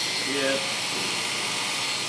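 Oster electric barber hair clipper running steadily with a faint high whine as it trims hair around the side of the head. A brief murmur of a voice about half a second in.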